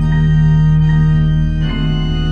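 Church organ playing sustained chords with a held low note, with a grand piano playing along. The chord changes near the end.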